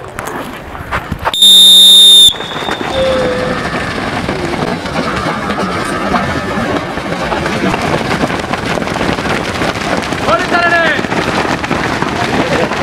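One loud, steady whistle blast of about a second signals the start of a running race. A large pack of runners then sets off on a dirt track, giving a steady noise of many feet, with a brief shout near the end.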